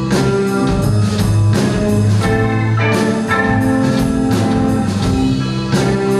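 Live rock band playing an instrumental passage with no vocals: electric guitars, bass guitar and drum kit keeping a steady beat.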